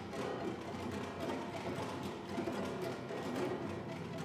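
Chamber ensemble playing contemporary classical music: a dense, continuous texture of many rapid short notes and attacks at a steady level.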